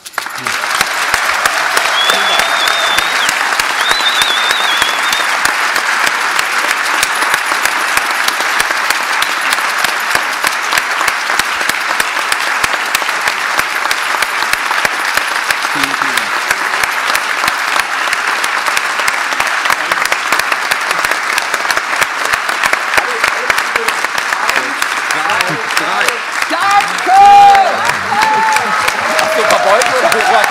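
Large audience applauding steadily in a hall, a dense continuous clatter of many hands clapping. Near the end, voices call out over the clapping, with the loudest shout a few seconds before the close.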